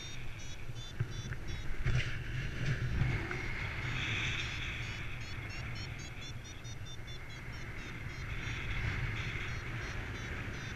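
Paragliding variometer beeping in a rapid run of short high beeps, the signal that the glider is climbing in lift, over a steady rumble of wind on the microphone.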